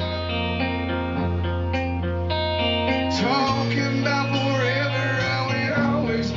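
Live rock band playing a slow song, with guitar chords ringing over a steady bass note. The harmony changes about halfway through and a wavering melody line comes in.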